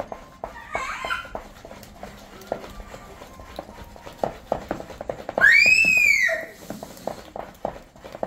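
Spatula knocking and scraping against a plastic mixing bowl while stirring pancake batter, a run of irregular soft taps. About five and a half seconds in, a loud high-pitched call lasting about a second rises and then falls in pitch.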